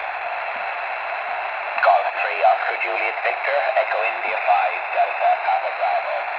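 Single-sideband receive audio from a Discovery TX-500 HF transceiver's speaker microphone on 20 metres: steady band hiss in a narrow voice band. About two seconds in, a distant station's voice comes up through the noise, replying on the air.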